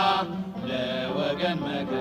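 Vocal chanting with long, held notes.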